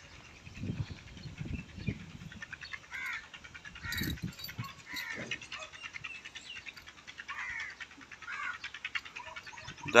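Faint outdoor ambience of a rural yard: birds chirping in short, scattered calls, with a few soft knocks from handling a collar and buckle early on.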